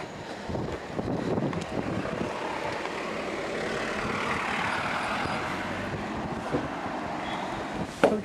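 Street traffic: a motor vehicle passing by, its tyre and engine noise swelling to a peak in the middle and then fading.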